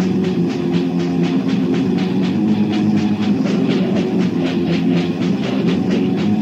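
Death metal band playing: fast, even drumming at about five strokes a second over sustained distorted guitar chords.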